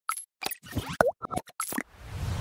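Logo-animation sound effects: a quick run of short pops and blips, about eight in two seconds. The loudest is a pop with a falling pitch about a second in.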